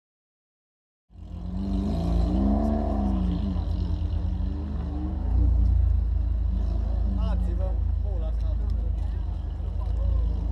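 A car's engine idling close by with a deep rumble, its pitch rising and falling briefly about two seconds in, under the chatter of a crowd of spectators. The sound starts suddenly about a second in.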